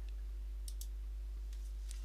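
Faint computer mouse clicks: a quick pair about two-thirds of a second in and another just before the end, over a steady low electrical hum.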